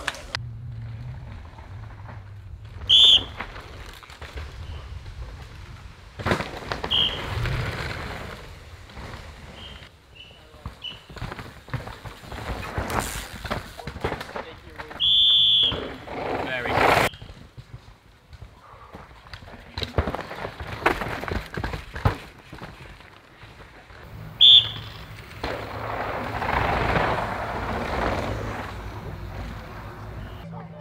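Downhill mountain bike riding on a dirt race track: tyres skidding and crunching over dirt and the bike rattling over bumps, with spectators shouting. Three loud, shrill whistle blasts cut through, the middle one the longest.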